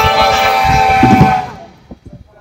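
Street brass band of saxophones, trombones, trumpets, tuba, clarinet and drum kit holding a final chord. The chord fades away about a second and a half in, ending the tune.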